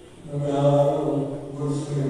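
A man's voice in long, held chant-like tones, starting about half a second in.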